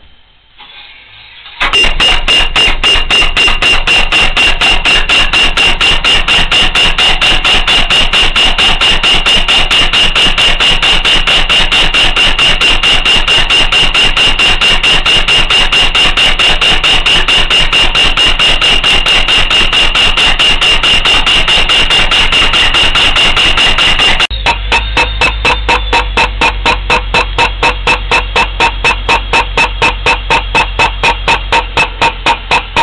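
Pneumatic soil-piercing tool (a 'missile' mole) hammering through the ground under air pressure: a loud, fast, even run of blows, several a second, with a steady high whistle, starting about a second and a half in. About three-quarters of the way through, the sound turns duller, with a deep hum under the same rapid pulsing.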